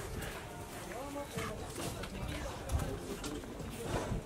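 Indistinct background voices over steady ambient noise.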